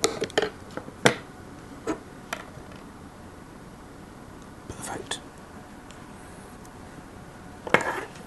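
Small side cutters snipping a stranded copper wire conductor with sharp clicks, the loudest about a second in, followed by scattered small clicks and taps as the tools and cable are handled.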